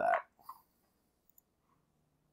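Near silence after the end of a spoken word, broken by one faint short click about half a second in.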